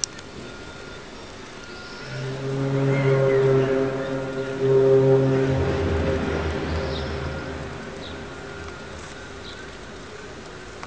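A loud, low, drawn-out groaning drone with a horn-like tone. It swells up about two seconds in, drops to a lower pitch partway through, and fades away over a few seconds. This is the unexplained 'strange sound' reported from the sky over Kiev.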